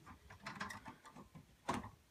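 Horizontal window blinds being closed by twisting the tilt wand: a run of faint clicks and rattles from the tilt gear and slats, with one louder click near the end.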